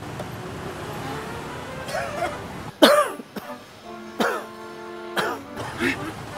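An elderly man coughing: a series of about five hoarse coughs, the loudest about three seconds in, from a man who is ill with a chill. Background music plays underneath.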